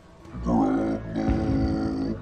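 A deep, drawn-out voiced grunt from the golem in response to an order, starting about half a second in. Heavy thuds set in a little later under it.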